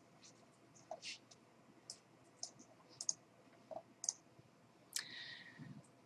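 Faint, scattered computer mouse clicks, about one every half second to a second, with a soft muffled rustle near the end.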